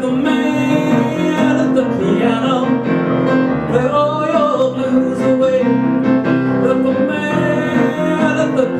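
Steinway grand piano playing a song accompaniment, with sustained chords and a moving melody line throughout.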